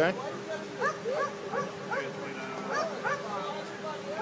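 A dog yipping in a quick run of short, high barks, two or three a second, over a steady low hum.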